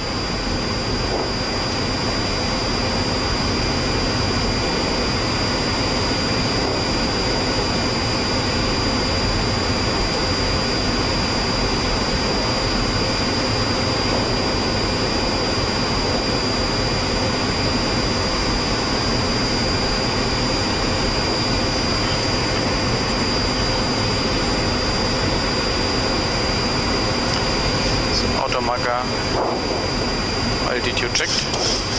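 Steady flight-deck noise of a Boeing 737-700 in flight on approach: an even rush of airflow mixed with its CFM56 jet engines running at constant power, with a thin steady high tone over it.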